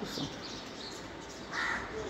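A crow cawing, the loudest caw about one and a half seconds in.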